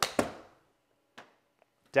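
A golf wedge striking a ball off a hitting mat with a sharp crack, followed a fraction of a second later by the ball hitting the simulator's impact screen. A fainter single knock follows about a second later.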